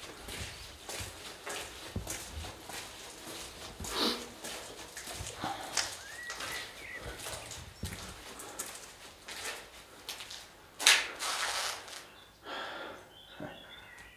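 Footsteps of a person walking on a stone floor strewn with leaves and grit, in irregular steps, with a louder scuff about three-quarters of the way through.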